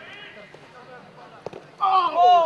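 Live field sound of an amateur football match: a player's call trails off at the start, a single sharp knock of the ball being kicked comes about one and a half seconds in, and a loud shout starts near the end.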